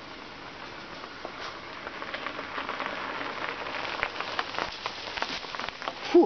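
Bicycle tyres crunching over a gravel road, with many small clicks from loose stones, growing louder as two riders approach and pass close by.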